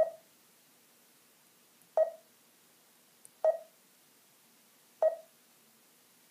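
Garmin Zumo 390 LM touchscreen beeping at each tap of its on-screen arrow: four short beeps, about one every one and a half to two seconds.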